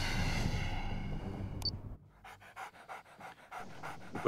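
A German shepherd panting in quick, even breaths through the second half. Before it, a held music chord fades out.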